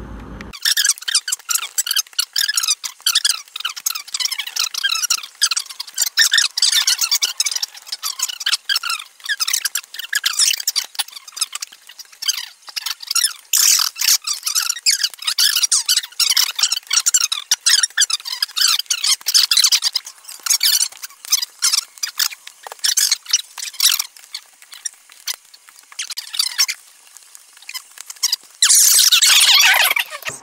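Fast-forwarded audio of a home poker game: table talk and the clatter of chips and cards sped up into a high-pitched, squeaky chatter with no low sound at all. A short loud rush of noise comes near the end.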